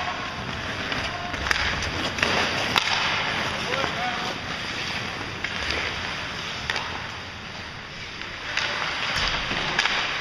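Ice hockey play in a rink: a steady hiss of skates on the ice with a few sharp clicks of sticks and puck, and a brief shout about four seconds in.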